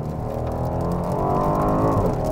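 The Alpina B8's twin-turbo V8, heard from inside the cabin, accelerating hard out of a corner, its note climbing steadily in pitch and growing louder.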